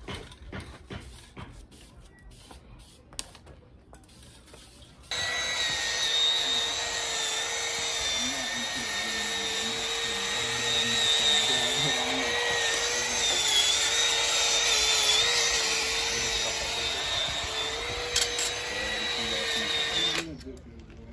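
Electric power tool motor running with a steady whine that wavers slightly as it is loaded against the engine block. It starts abruptly about five seconds in, after faint handling clicks.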